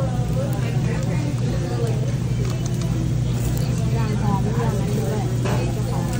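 Restaurant dining-room chatter: several voices talking over a steady low hum.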